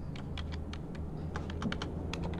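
Typing on a computer keyboard: a quick, irregular run of about a dozen key clicks.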